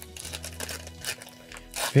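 Wrapper of an old Japanese Yu-Gi-Oh booster pack crinkling and tearing softly as it is slowly peeled open by hand.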